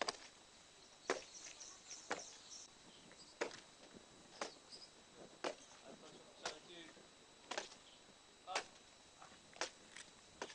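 Faint footsteps of soldiers marching in step on packed dirt: a sharp boot stamp about once a second.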